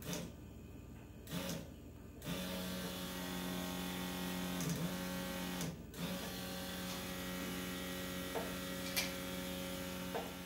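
Small electric fuel pump whirring steadily, cutting in about two seconds in, dropping out for a moment near the middle and coming straight back as the wiring is worked: the on-off running of a pump with a poor connection at a connector. A few light clicks of handling come before it starts.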